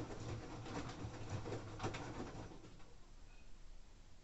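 LG AiDD direct-drive front-loading washing machine tumbling a wet load in its heated main wash: clothes and water slosh and slap in the drum over a low motor hum. The drum stops about two and a half seconds in.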